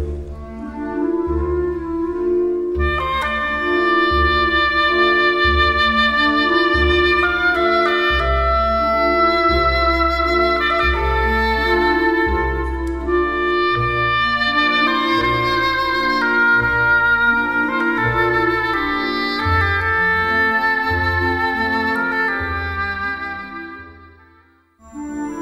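Concert band music for solo oboe and band: a woodwind melody in long held notes over sustained band chords and a pulsing bass line, fading out at the end.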